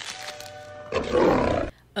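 Film soundtrack: held orchestral notes, then about a second in a loud creature roar from the giant alien bug, cut off abruptly.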